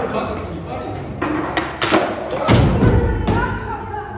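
Skateboard on a wooden floor during an ollie attempt: a few sharp clacks from about a second in, then a heavy thump of board and rider hitting the floor about two and a half seconds in, the loudest sound.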